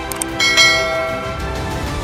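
A notification-bell sound effect for a subscribe animation. Two quick clicks come first, then a bright chime rings out about half a second in and fades over the next second, over steady background music.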